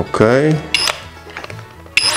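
A short mechanical click from a cordless drill's chuck as the bit is set, then the drill's motor starting up with a high whine right at the end as the trigger is pressed.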